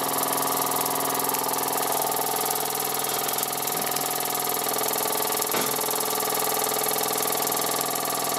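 Wilesco toy steam engine running steadily at speed: a continuous rapid mechanical buzz with a hiss of steam.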